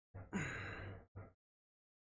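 A man's quiet voiced sigh, about a second long, falling in pitch, with a short breath just before and after it.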